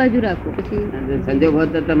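A voice speaking in a recorded Gujarati discourse, with drawn-out syllables that rise and fall in pitch.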